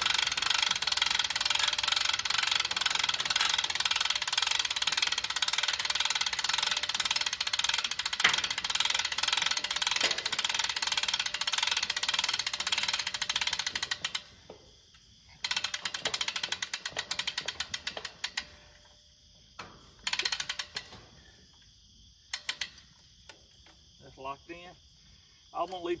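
Hand-cranked cable winch ratcheting as it hauls up a hog trap's gate: a fast, steady clicking that stops suddenly about fourteen seconds in, followed by a few shorter bursts of clicking.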